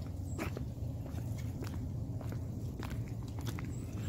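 Footsteps of leather shoes on an asphalt road, a few sharp scuffing steps a second over a steady low rumble.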